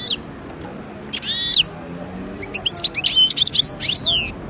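European goldfinch singing. A short twittering burst comes about a second in, then a quicker run of sharp, sliding notes over the last second and a half.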